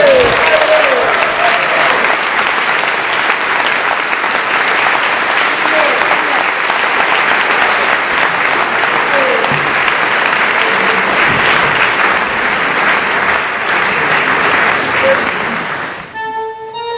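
Concert audience applauding steadily, with a few voices calling out over the clapping. The applause dies away near the end.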